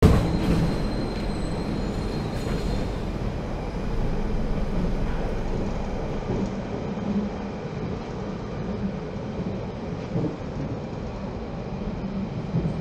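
Steady rumble of a subway car running on the rails, heard from inside the carriage. It cuts in suddenly, with a faint high whine over the first few seconds.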